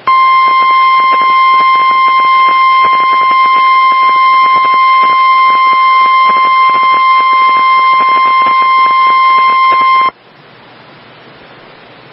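NOAA Weather Radio warning alarm tone, a single steady tone of about 1050 Hz, sounding for about ten seconds and then cutting off suddenly. It signals the tornado warning that follows. Radio static crackles underneath it, and the static is heard alone once the tone stops.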